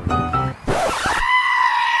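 Piano music for the first half second, then a sudden noisy burst and a long, high-pitched scream held on one pitch.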